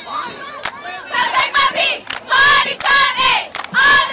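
A group of cheerleaders shouting a chant in unison, in short rhythmic phrases.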